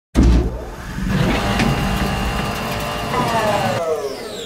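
Intro sound effect: a heavy engine-like rumble with a vehicle-type sound, then a whoosh that sweeps down in pitch through the last second.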